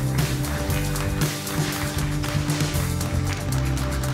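Live band music with a steady beat: a Yamaha MX49 keyboard, electric guitar and drum kit playing together.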